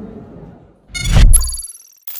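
Logo sting: about a second in, a deep booming whoosh sweeping down in pitch, with a bright bell-like ding ringing over it and fading.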